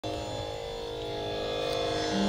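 Steady drone of several held notes from an electronic tanpura (sruti box), the pitch reference for a Carnatic performance, with a faint low hum underneath.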